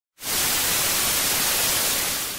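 Analog TV static hiss, a white-noise sound effect, starting suddenly a moment in and holding steady.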